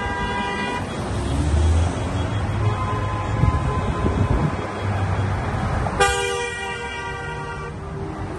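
Car horns honking as rally cars drive past: a short honk at the start, then a long honk lasting almost two seconds about six seconds in. Engine and road noise from the passing cars runs underneath.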